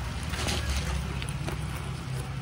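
Rustling and rubbing of a black fabric bag and its plastic wrapping as it is handled up close, with low rumbling handling noise on the microphone.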